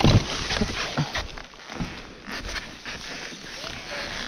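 Handling noise around a Husqvarna enduro motorcycle lying on its side in dry leaves: a loud thump right at the start, then irregular knocks and rustling of leaves and brush.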